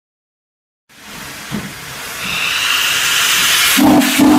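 Steam locomotive venting steam at the cylinders: a hiss that starts about a second in and grows steadily louder.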